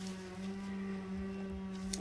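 A distant chainsaw running at steady high revs, one unchanging buzzing drone.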